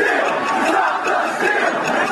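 A large crowd of rioters yelling and shouting all at once, a dense, steady mass of voices with no single speaker standing out.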